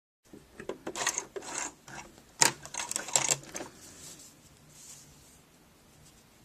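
Sewing machine clicking and clattering irregularly for about three and a half seconds, the loudest click about two and a half seconds in, then only faint room noise.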